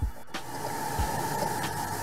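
Background music with a steady hiss under it and a low thump about a second in.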